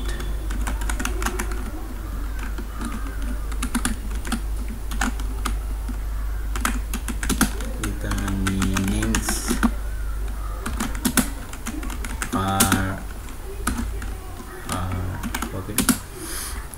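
Computer keyboard typing: irregular runs of keystroke clicks as a line of code is entered, over a steady low hum.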